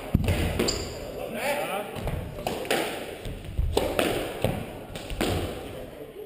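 A squash rally in an echoing court: the ball is hit by the rackets and smacks against the walls in a run of sharp impacts, a few tenths of a second to about half a second apart, with shoes squeaking briefly on the wooden floor.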